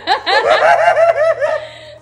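A person laughing: a quick run of high-pitched giggles that tails off near the end.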